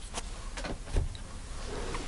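Tarot cards being handled on a cloth-covered table: faint sliding and light taps, with a soft knock about a second in.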